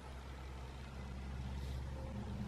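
A steady, low mechanical hum with a few even tones, growing slowly louder.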